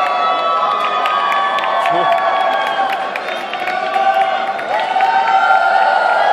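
Large arena crowd cheering, with many high voices holding long screams over one another.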